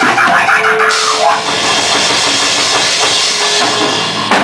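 Rock band playing a song loudly: drum kit with a constant wash of cymbals, electric guitar and bass guitar, all crowding together in a rough, distorted recording.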